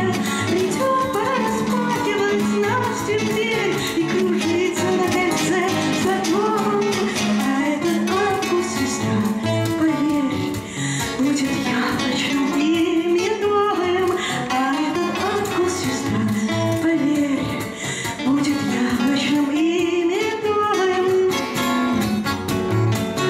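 A woman sings a song in a live acoustic set, accompanied by a steel-string acoustic guitar and a nylon-string classical guitar, with hand percussion on a cajon keeping the beat.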